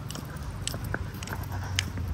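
Footsteps on a concrete sidewalk while walking a dog: light, sharp clicks about twice a second over a low rumble.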